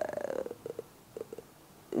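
A woman's drawn-out hesitation sound ("uhh") trailing off and falling in pitch over about half a second. Then come a few faint brief mouth or lectern clicks and quiet hall tone, with her speech starting again right at the end.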